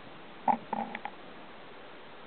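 A few short vocal sounds from a person: a loud one about half a second in, then three quicker, fainter ones.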